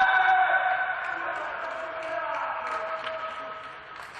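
Voices shouting a long, drawn-out cheer at the end of a volleyball rally, the held notes loudest at the start and dying away toward the end.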